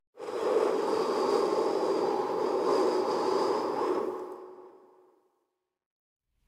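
A rushing whoosh sound effect that starts suddenly, holds for about four seconds, then fades away.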